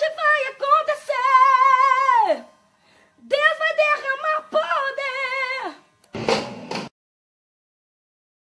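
A woman singing solo and unaccompanied, two held phrases with wide vibrato; the first ends with her pitch sliding down. A short noisy sound, like a breath, follows near the end.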